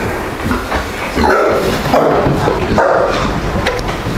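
Fattening pigs in a pen grunting, several short calls from about a second in, as they are driven along with a switch.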